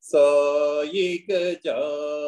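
A voice chanting a devotional mantra in long held notes, starting suddenly, with two short breaks between phrases.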